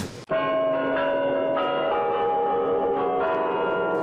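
Sustained bell-like chiming tones, several sounding together and shifting pitch a few times, beginning abruptly just after the start.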